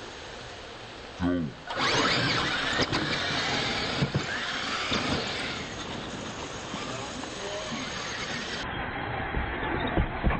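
Two radio-controlled monster trucks launching and racing side by side on dirt: a loud, high whine of their motors and tyres scrabbling, starting suddenly about two seconds in, with a few sharp knocks as they hit the ramps and jumps.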